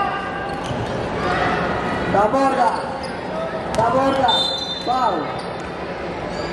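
Indoor basketball game in a gymnasium: a ball bouncing on the hardwood court amid players' shouts, with a brief high steady whistle tone a little after four seconds in.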